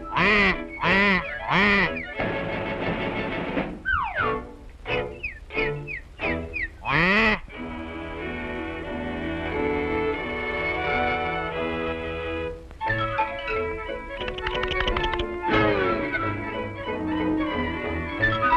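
Orchestral cartoon score with a few quacking duck-like calls in the first two seconds and falling sliding calls about four to seven seconds in, then sustained, layered orchestral music.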